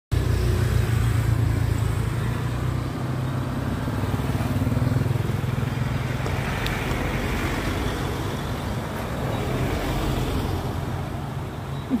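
A car engine idling steadily, a low even hum, with a faint sharp click about two-thirds of the way through.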